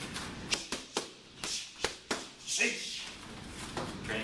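Boxing gloves smacking focus mitts in a fast punch combination: about five sharp slaps within the first two seconds, with a couple of short breathy hisses between strikes.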